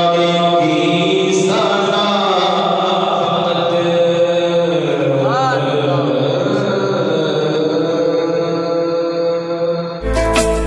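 A man's solo voice chanting a naat, an Urdu devotional poem, through a microphone. He holds long notes and bends them, with a quick ornamented turn in pitch about halfway through.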